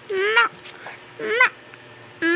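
A toddler's short, high-pitched vocal calls, twice, each rising in pitch.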